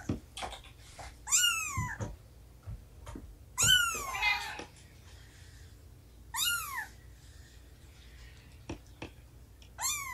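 A cat meowing three times, each a high call that falls in pitch, with faint knocks between the calls.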